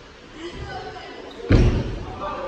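A single heavy thud about one and a half seconds in, deep and brief with a short echo of a large hall, against faint voices.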